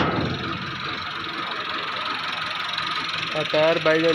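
A sharp tap of a hand on the thresher's painted sheet-metal panel right at the start, over a steady background drone. A man's voice begins near the end.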